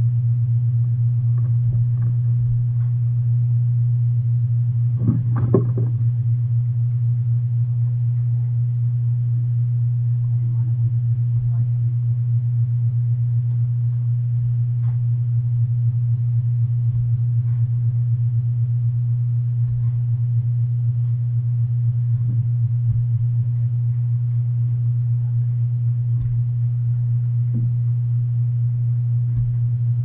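A loud, steady low hum throughout, its source unseen, with faint scattered knocks of a steel digging bar and a shovel striking dry soil, and one louder clatter about five seconds in.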